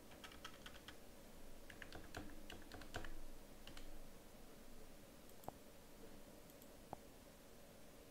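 Faint typing on a computer keyboard for about four seconds as a password is entered, followed by two single clicks about a second and a half apart.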